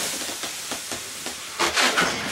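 Inflated latex twisting balloons rubbing against each other and against hands as they are handled and twisted, with a few short ticks midway and a louder burst of rubbing near the end.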